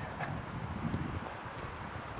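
Wind buffeting the microphone of a handheld camera carried on a run: a low, uneven gusting noise.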